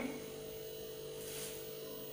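Steady low electrical hum, with a faint brief rustle a little past the middle.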